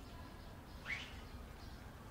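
Quiet room tone with one faint, short, rising chirp about a second in.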